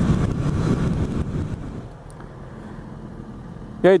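Yamaha XJ6 inline-four motorcycle running at highway speed with wind rushing over the microphone. About two seconds in, the sound drops to a quieter, steady motorcycle idle at a stop, and a voice speaks briefly at the end.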